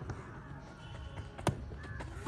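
Faint open-air ambience with a bird calling, and a single sharp click about one and a half seconds in.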